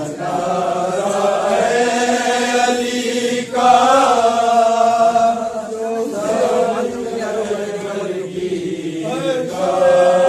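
A group of men chanting a noha, a Shia lament, with long held and gliding notes and no drumming or chest-beating rhythm.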